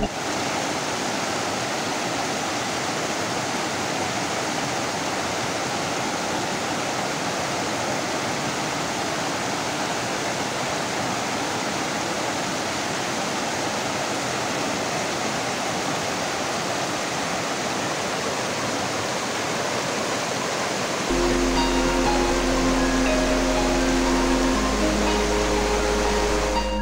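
Fast mountain stream rushing and cascading over boulders: a steady hiss of white water. Near the end, soft instrumental music with sustained notes comes in over the water.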